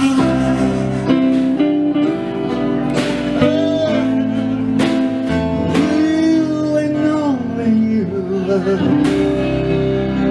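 Live band music: a man sings long held notes with vibrato over electric guitar.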